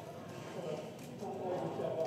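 Indistinct chatter of several people's voices behind the glass, no words clear enough to make out.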